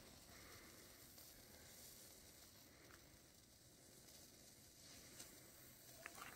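Faint, steady sizzling hiss of a burning saltpetre (potassium nitrate) and sugar mixture.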